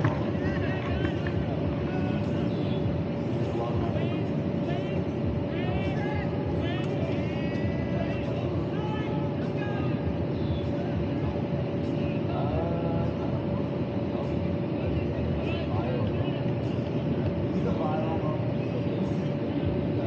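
Electric inflator blower keeping a BMX airbag lander inflated, running steadily with a constant hum.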